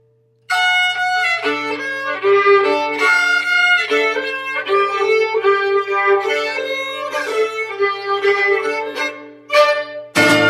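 Music: a violin playing a melody of quickly changing notes, coming in about half a second in after a brief silence, with a short break near the end.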